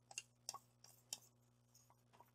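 Near silence with a few faint ticks: a wooden popsicle stick scraping thick white glue out of a plastic measuring cup into a plastic tub.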